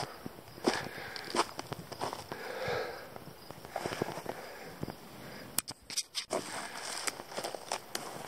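A hiker's footsteps on rock and through brush: irregular scuffs, crackles and clicks of boots and branches rubbing past, with a brief drop-out about six seconds in.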